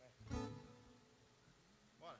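A single chord strummed once on an electric guitar about a third of a second in, ringing on and fading away.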